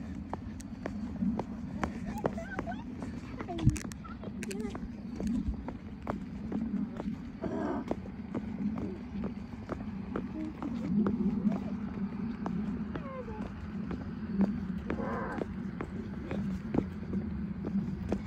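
Footsteps of people walking on an asphalt path, an irregular run of short steps over a steady low rumble, with brief murmured voice sounds twice.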